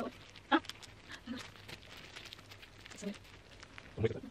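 A woman's short wordless vocal noises, three brief yelps spread through, over faint crinkling of the plastic foot-mask sock as she pulls it onto her foot.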